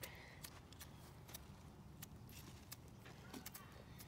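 Faint, short scrapes of a Firebiner's striker against its ferro rod, about eight strokes scattered through, over a low rumble: sparks being thrown at cotton tinder that has not yet caught.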